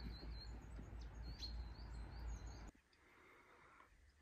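Small birds chirping and twittering outdoors over a low rumbling noise. About two-thirds of the way through, the sound cuts abruptly to faint, near-quiet room tone.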